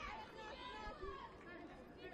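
Faint, distant calls and shouts of players on the pitch over low stadium ambience.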